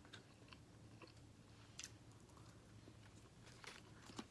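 Faint chewing of a mouthful of plain white rice, with a few soft clicks from a plastic fork and a paper takeout carton being handled.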